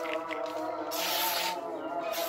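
A spring-steel wakizashi blade slicing through a sheet of paper: one short hissing swish about a second in, lasting about half a second.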